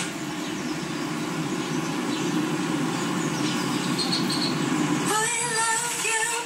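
A steady rough hiss and buzz of static from a TV's speaker, with only faint traces of the programme sound under it, as the weak analog signal breaks up. Music with singing cuts back in about five seconds in.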